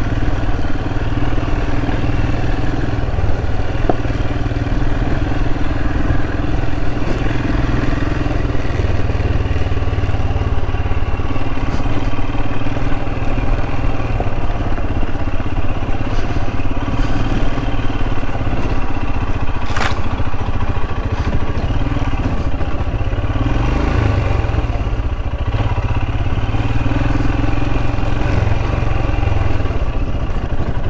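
Royal Enfield Himalayan's single-cylinder engine running steadily at low speed on a dirt track. A single sharp knock about two-thirds of the way through.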